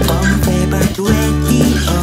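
Power-pop song: strummed acoustic guitar over electric bass, with a man singing. There is a brief break in the low end about halfway through.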